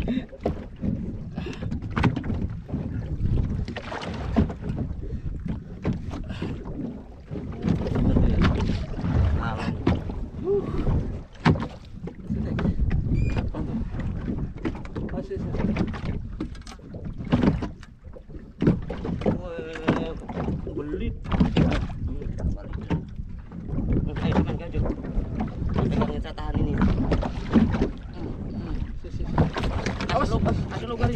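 Wind buffeting the microphone and choppy water slapping against a small wooden boat's hull, in an irregular low rumble, with indistinct voices now and then.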